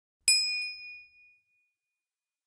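A single bright bell-ding sound effect for the notification bell of a subscribe-button animation, struck once about a quarter second in and ringing out for about a second and a half.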